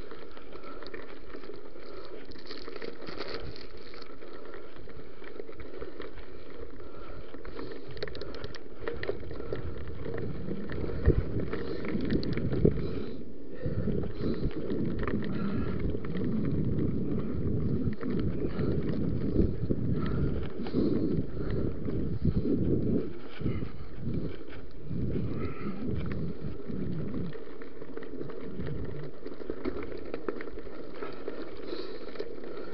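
Mountain bike rolling over a gravel forest track: a steady crunch and rattle of tyres and bike, with wind on the microphone. From about ten seconds in the ride gets rougher, with heavier rumbling jolts and a few sharp knocks.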